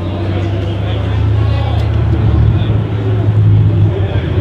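Ford GT's V8 engine running at low revs in a steady, deep rumble as the car rolls slowly closer, growing gradually louder.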